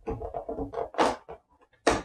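Perforated cardboard door of an advent calendar being pushed in and torn open: a run of irregular crackles and scrapes, with a louder rip about a second in.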